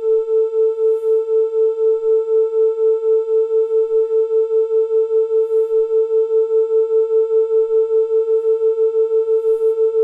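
Two pure tones near 440 Hz played together from smartphone tone-generator apps: one held at 440 Hz, the other stepped up from 444 to 446 Hz. The combined tone swells and fades in loudness as beats, quickening from about four to six beats a second as the frequency difference grows.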